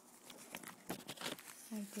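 A small plastic treat baggie crinkling and rustling in the hands as it is worked open, a run of irregular crackles.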